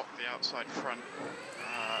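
A driver's voice over team radio, then a high electric whine that rises sharply in pitch and holds steady, typical of a Formula E car's electric powertrain.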